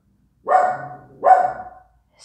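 Pet dog barking: two short barks under a second apart, which the owner puts down to someone skateboarding outside.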